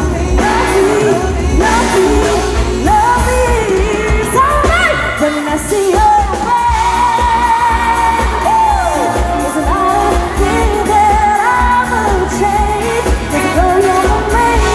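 A woman singing a pop song live into a microphone, backed by a band with electric guitar, bass guitar and drums, at a steady loud level.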